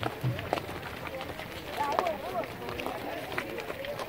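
Children's voices chattering in a group, with scattered footsteps of many people walking on dry dirt.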